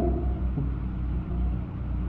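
Steady low hum and rumble of an old sermon recording in a pause between spoken phrases, with the preacher's voice trailing off just at the start.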